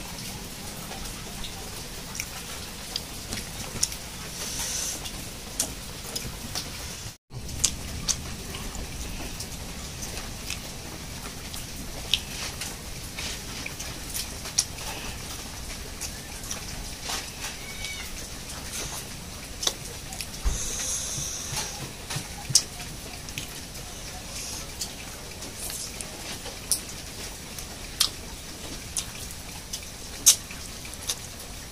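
A person eating rice and eel balado by hand from a banana leaf: chewing, with short sharp mouth clicks and smacks scattered throughout, over a steady background hiss.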